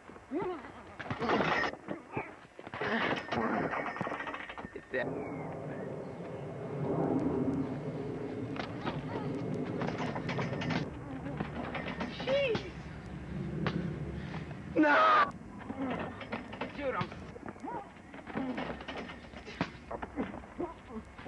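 Indistinct voices and short calls, with a steadier background noise through the middle and one loud, high-pitched cry about fifteen seconds in.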